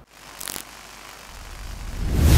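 Transition sound effect: a faint steady hiss with a brief high swish about half a second in, then a low rumble swelling toward the end.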